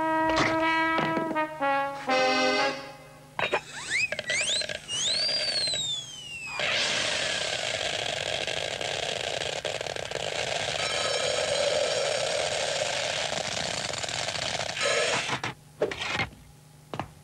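Cartoon soundtrack of music and sound effects: held musical notes and a quick run of short notes, then whistling glides that swoop up and down and fall away, then a long steady hiss lasting about eight seconds, with a few notes again near the end.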